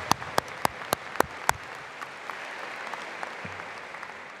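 Crowd applauding, with a few loud, sharp claps close to the microphone in the first second and a half. The applause then goes on as an even patter and fades slightly near the end.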